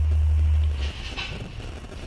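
A steady low hum that cuts off suddenly just under a second in, leaving faint room noise.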